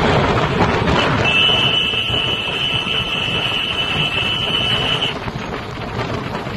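Road noise from a passing convoy of tractor-trolleys. A steady high-pitched electronic tone sounds over it from about a second in and lasts about four seconds.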